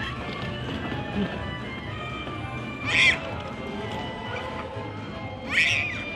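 Background music playing steadily, with two short, high-pitched squeals from a toddler, one about halfway through and one near the end.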